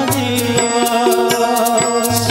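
Live Odia devotional music with a sustained, wavering organ melody over a quick, steady beat of tabla and khanjani frame-drum jingles, with a deep bass drum pulse.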